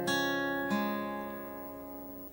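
Acoustic guitar with a capo on the first fret, single strings of a C chord shape picked one at a time in an arpeggio: a note at the start and another under a second later, both left to ring and fade.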